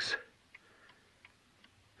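A man's voice trails off at the start, followed by a near-silent pause with a few faint ticks, spaced a little under half a second apart.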